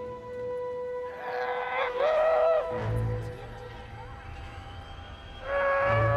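Film soundtrack: music holds a steady note, while a child's strained, effortful voice rises twice. A low rumble sounds between the two strains.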